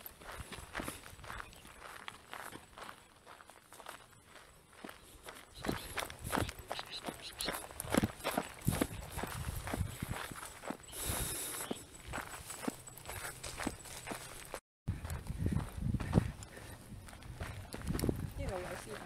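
Footsteps of a hiker walking on a dirt and rock hill trail, an irregular run of crunching steps that grows louder about six seconds in, broken by a brief dropout near the end.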